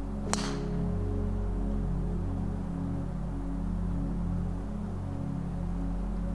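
Slow ambient background music with sustained low tones. About a third of a second in comes one sharp crack: a golf club striking the ball off the tee.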